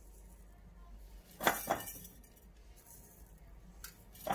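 Black olives dropped by hand into a glass jar, knocking against the glass and each other in a short cluster about one and a half seconds in, with one more click just before the end.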